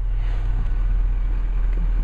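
A Ford 6.7-litre Power Stroke V8 turbodiesel idling steadily, a low even hum heard from inside the truck's cab.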